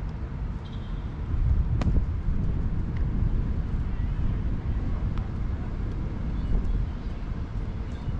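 Wind rumbling on the microphone, with one sharp crack a little under two seconds in.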